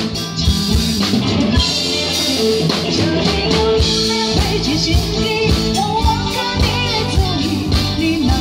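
A woman singing live into a microphone, backed by a band with drum kit and guitar through a concert sound system, the drums keeping a regular beat.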